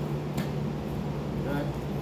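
A steady low hum, as of a fan running, with one short click about half a second in; a man says "right" near the end.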